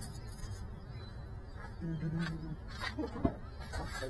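A car door unlatching with one sharp click about three seconds in, over a low outdoor rumble, with a short hum before it and brief voice sounds near the end.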